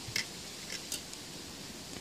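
Faint light clicks and rustling of a circuit board and a strip of pin headers being handled, a few scattered ticks over a steady quiet hiss.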